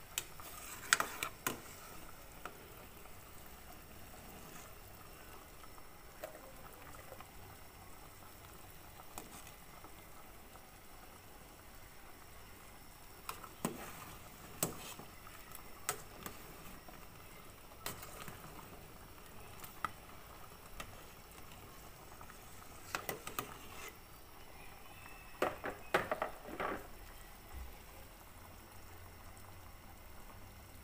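Water with chicken feet boiling hard in a metal stockpot, a steady bubbling. Over it come sharp clinks of a metal ladle against the pot as the foam is skimmed off: a few about a second in, more scattered through the middle, and a cluster near the end.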